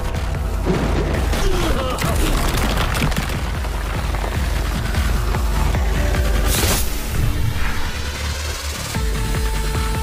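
Anime battle soundtrack: music with a heavy steady bass, mixed with impact sound effects, and a sudden sharp crash about two-thirds of the way in.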